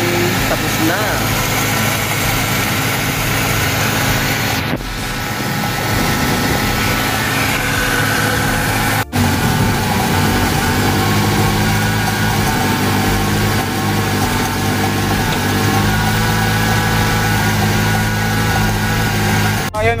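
Nissan Sentra's carbureted four-cylinder engine idling steadily after its dirty carburetor was cleaned and its seized throttle valve freed. The sound breaks off abruptly about 5 and 9 seconds in, where separate takes are joined.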